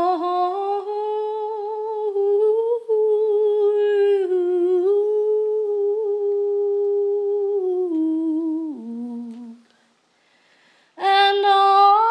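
A woman humming wordlessly with no accompaniment, holding one long note that wavers slightly, then stepping down and sliding lower before stopping. After a silence of about a second and a half a new, higher note begins.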